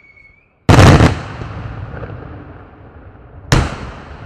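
Daytime aerial fireworks shells bursting overhead. A high whistle fades out at the start, then a very loud double bang comes about two-thirds of a second in, with a long rolling echo, and another sharp bang follows near the end.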